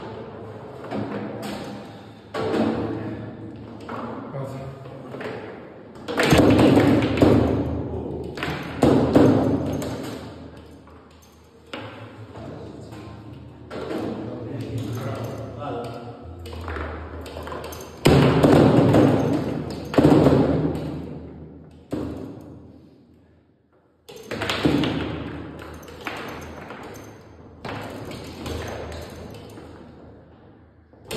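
Foosball play: the ball being struck by plastic men on the rods and clacking off the table walls, with rods knocking against the bumpers. Irregular sharp knocks, each with a short ringing tail, some much louder than others.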